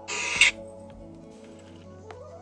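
A loud half-second burst of rubbing noise as a hand handles the phone that is recording, then soft, calm background music with long held tones.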